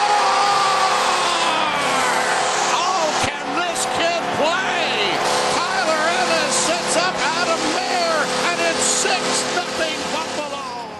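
Arena goal horn sounding with a steady held chord over a crowd cheering and shouting, signalling a home-team goal.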